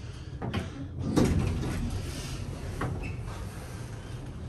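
Schindler elevator arriving at its floor and its two-speed sliding door opening. A sharp clunk about a second in is followed by the door panels sliding for about two seconds, with a click near the end.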